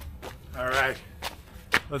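A man's voice: one short wordless vocal sound about half a second in, a single sharp tick a little before the end, then he begins to speak.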